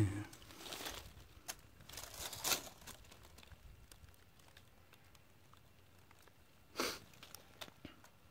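Quiet rustling and crinkling in a few short bursts, the louder ones about two and a half and seven seconds in.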